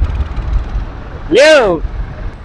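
Low rumble of a motorcycle engine riding slowly past at close range. A voice calls out a single word about one and a half seconds in.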